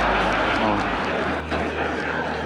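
A large audience laughing in a big hall, a dense wash of many voices that eases a little toward the end.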